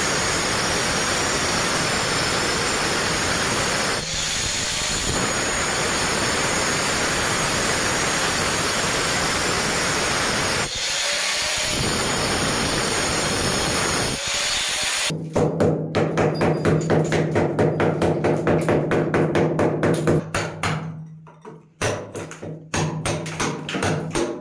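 Angle grinder with a cutting disc cutting through ceramic wall tile, with two brief dips in the cut about four and eleven seconds in. About fifteen seconds in the grinder stops and rapid, evenly spaced knocks take over, about four or five a second, with a short pause near the end.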